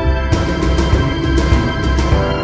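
Dramatic theme-style background music: sustained chords over a heavy bass, with a crash about a third of a second in.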